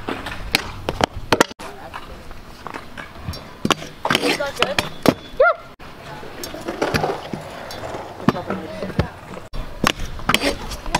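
Stunt scooter wheels rolling on concrete, broken by repeated sharp clacks as the deck and wheels hit and come off a concrete ledge.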